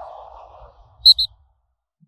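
Logo-reveal sound effects: the fading tail of a whoosh dying away, then two quick high chirps about a second in.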